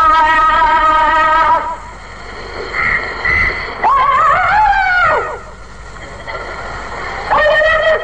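A man's voice singing a devotional naat unaccompanied, in long held notes. A held note ends about a second and a half in, a melismatic phrase rises and falls in the middle, and a new held note starts near the end.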